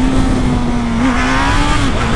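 Motorcycle engine revving high under hard acceleration, holding a steady high note over wind rushing past the onboard microphone, dipping briefly near the end.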